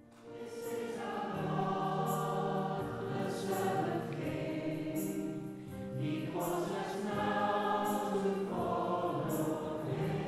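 A choir singing slow, sustained chords of a hymn-like piece, fading in from silence at the start.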